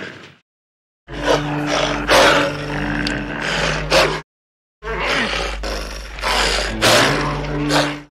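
Two bursts of a large wild animal growling, each about three seconds long, cut apart by a moment of dead silence. A low hum from the old film soundtrack runs under each burst.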